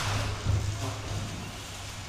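12 lb combat robots clashing: a sharp metal hit with sparks at the very start, then a steady low hum of spinning motors, swelling briefly about half a second in.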